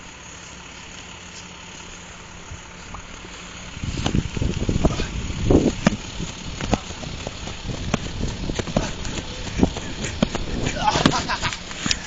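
A steady low hiss, then from about four seconds in, wind rumbling on a phone microphone with irregular thuds and knocks as someone runs and jumps close to it.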